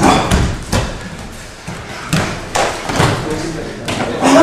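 Bodies landing on gym mats in a string of thumps as martial-arts students break their falls and roll during a self-defence demonstration.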